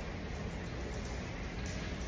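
Steady room noise, heaviest in the low range with a faint hiss above it, and no distinct events.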